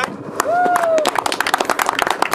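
Small crowd applauding a placing announcement: a long whoop about half a second in, then scattered clapping that builds from about a second in.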